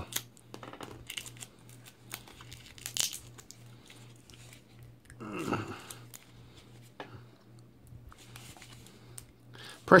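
Plastic packaging being handled: scattered crinkling and small clicks as hands work open a taped clear plastic tube with a white snap-on cap, with a brief murmured vocal sound about halfway through.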